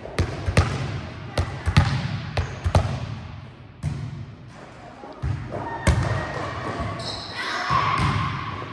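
Volleyballs being struck and bouncing on a hard gym floor: a string of sharp smacks in the first four seconds and another loud one about six seconds in, echoing in a large hall.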